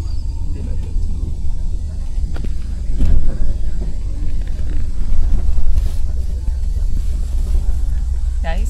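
Steady low engine and road rumble heard from inside a moving vehicle.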